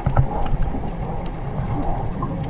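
Underwater sound recorded through a camera housing: a steady muffled low rumble with scattered faint clicks, and a short knock just after the start.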